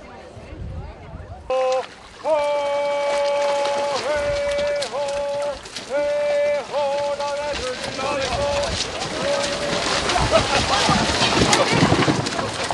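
Oppsang, the traditional launching chant for a fembøring: a lead voice calls in a string of long, steady held notes with short breaks while the crew heaves the big wooden boat toward the sea. Near the end the chant gives way to rising splashing and general noise as the boat goes into the water.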